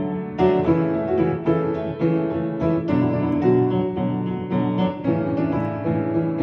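Upright piano being played by hand: a melody over lower chords, with new notes struck a few times a second.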